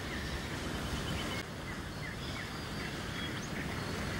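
Steady outdoor background ambience with a few faint, scattered bird chirps.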